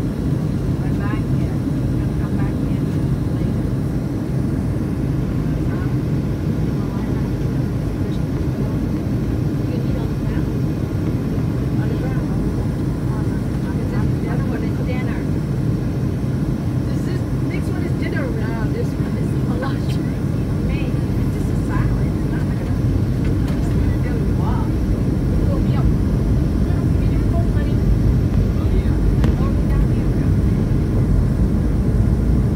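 Boeing 757-200 airliner cabin noise on descent: a steady low rumble of the jet engines and airflow, heard from inside the cabin, growing slightly louder toward the end. Faint passenger voices come and go behind it.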